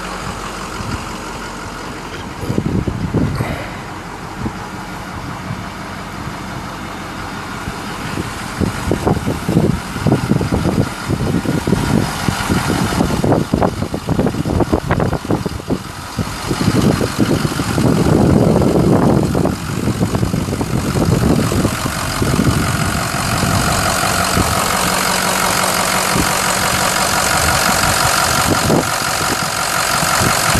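Ford 6.0-litre Power Stroke V8 turbo diesel idling steadily, louder and clearer in the last several seconds.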